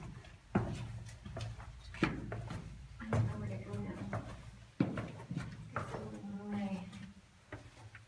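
Irregular footsteps and knocks on the stone floor of a narrow rock-cut tunnel, with indistinct voices in between.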